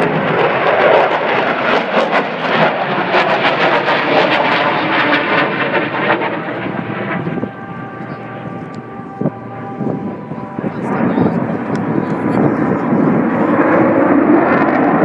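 Lockheed Martin F-22 Raptor fighter's twin Pratt & Whitney F119 turbofans passing overhead: loud, crackling jet noise for the first seven seconds or so. It eases for a few seconds, then builds again toward the end.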